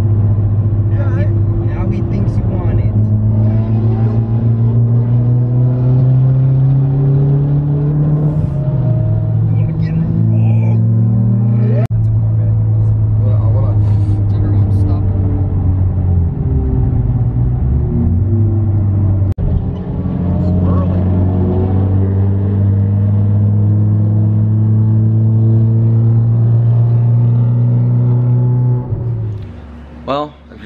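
Car engine droning inside the cabin at highway speed. Its pitch rises slowly as the car accelerates, drops back, dips low for a couple of seconds midway, then holds steady until it cuts off just before the end.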